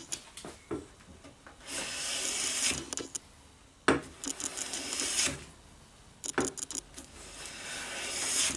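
Restored Stanley Bailey No. 4 hand plane taking shavings along the edge of a pine board: two strokes of about a second each with a hiss of cutting, a third beginning near the end. A sharp knock as the plane is set down opens the second stroke, with lighter clicks and knocks between strokes.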